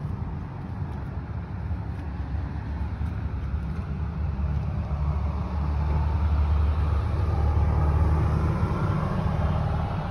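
A motor vehicle passing on the street, a low engine rumble that grows louder to a peak about three-quarters of the way through, then eases a little.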